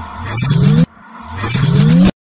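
Logo-animation sound effect: a loud whooshing sweep whose low tone dips and rises again, then, after a brief drop about a second in, a second sweep rising in pitch and building until it cuts off suddenly.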